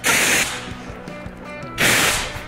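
CO2 fire extinguisher discharging in loud hissing blasts: one short blast at the start and another beginning near the end, with a quieter gap between.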